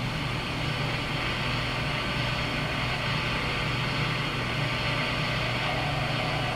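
Steady background noise with no speech: a low hum under an even hiss that holds level throughout.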